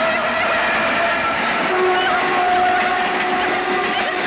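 A train running past, with a long steady horn tone held over the noise of the carriages.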